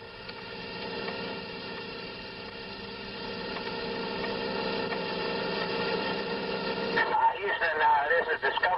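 Radio transmission noise from a recording of space shuttle radio traffic: a steady hiss with several held tones, slowly growing a little louder. About seven seconds in, a voice comes in.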